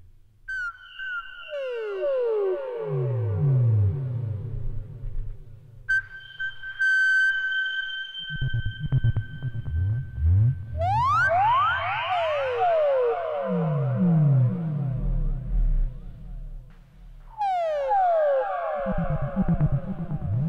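Behringer Neutron analog synthesizer playing a noisy drone: fast, repeated falling pitch sweeps in low, middle and high registers over steady held high tones. The texture shifts every few seconds as its knobs are turned.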